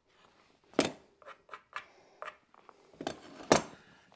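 A few separate light metallic clicks and short scrapes as a combination square with a steel rule is handled and lifted off the stair stringer. The loudest clicks come about a second in and near the end.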